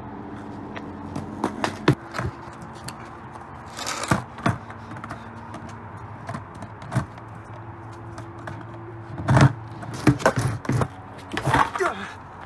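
Skateboard clattering on concrete and a plastic grind ramp: a series of sharp clacks and knocks from the deck and wheels, loudest in a cluster about nine to eleven seconds in. A steady low hum runs underneath.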